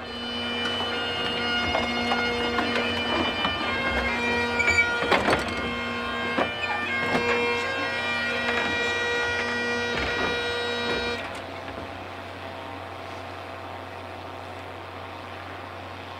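Bagpipes playing a slow tune over a steady drone, the piping ending about eleven seconds in, leaving a low steady hum.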